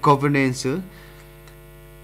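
A newsreader's voice for under a second, then a pause that holds only a steady hum in the recording.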